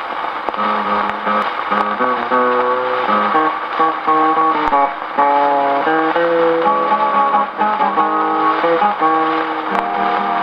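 A 1939 78 rpm shellac record playing on an acoustic gramophone's soundbox. A Hawaiian steel guitar carries the melody in held, gliding notes over a plucked guitar accompaniment. The sound is thin and top-cut, with steady surface hiss and a few clicks from the disc.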